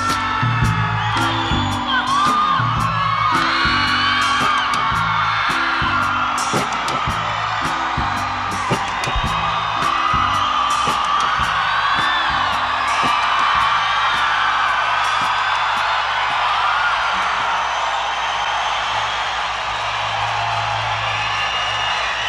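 Live rock band playing out the end of a song, with a repeating bass riff and drum hits under an audience that is whooping and cheering. About fifteen seconds in, the drums stop and a low note rings on under the cheering.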